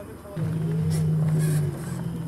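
A steady low engine-like drone sets in about half a second in, with faint voices under it.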